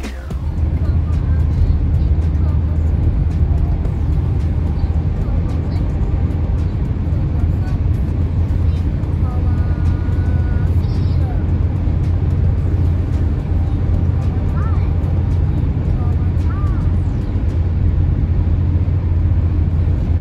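Steady low rumble of tyre and engine noise heard inside a car's cabin while driving on a motorway, with a few faint, brief tones around the middle.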